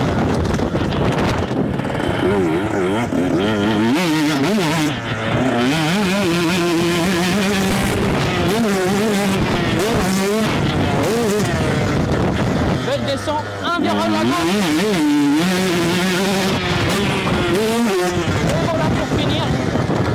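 Two-stroke 125cc motocross bike engine ridden hard on a dirt track, heard from a handlebar-mounted camera, its pitch rising and falling over and over as the rider revs and shifts. The engine note drops briefly about five seconds in and again around thirteen seconds.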